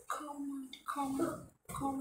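A person's voice making wordless vocal sounds in three short phrases, each held on a fairly steady pitch.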